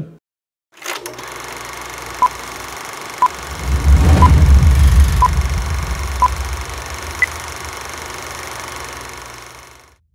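Logo outro sound effect, starting about a second in: a steady electronic noise bed with a low rumble that swells in the middle, five short beeps at one pitch a second apart, then a single higher beep. It fades out near the end.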